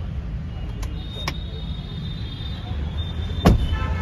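Steady low rumble in a Mahindra Thar's cabin with a couple of light clicks, then one sharp click about three and a half seconds in as the car door is opened.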